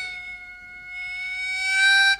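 Chromatic harmonica holding one long note at a steady pitch, dipping in level and then swelling louder toward the end.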